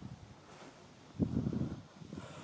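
A brief low thump, then about a second in a short low rumble on the microphone lasting under a second.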